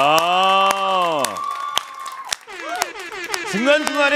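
A man's live singing voice holds one long closing note that rises and falls for about a second and a half as the song ends. Scattered hand claps and cheers follow, and voices and laughter start near the end.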